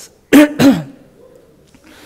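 A man clearing his throat: two short, loud bursts about a third of a second apart, about half a second in.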